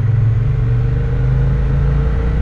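Motorcycle engine running steadily at an even road speed, a constant low hum with a faint higher tone above it, heard from the rider's own bike.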